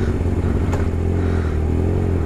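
Kawasaki ZX-6R 636 inline-four engine running steadily at an even, low engine speed while the bike rolls slowly in traffic, with no revving.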